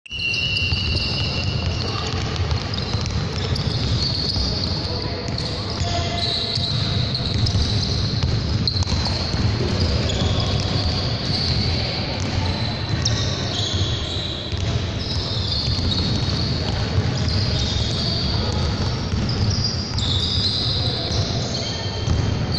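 Basketballs bouncing on a hardwood gym floor, with voices in the background.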